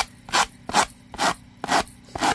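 A sanding block sanding the cut edge of a thick cardboard tag in short repeated strokes, about five of them, roughly two a second. The sanding smooths the rough edge left by cutting.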